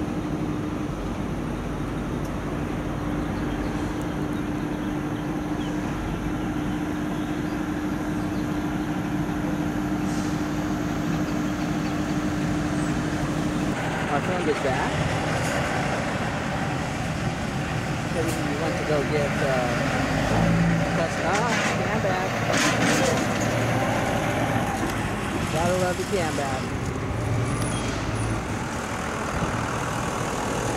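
Outdoor vehicle and truck noise with a steady hum that cuts off about halfway through. Indistinct voices follow, with a few knocks.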